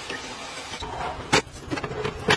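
Cordless handheld electric whisk running steadily as it beats eggs in a stainless steel bowl. The whirr gives way to a sharp click about a second and a half in, followed by a couple of lighter knocks.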